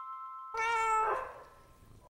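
A chime note from the intro music rings out and fades, and about half a second in a domestic cat gives one short meow.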